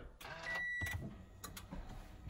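Clicks and one short, steady electronic beep as the car's ignition is switched on.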